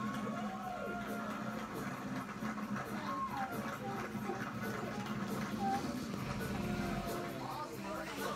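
Music from a television program playing in the room, with indistinct voices under it.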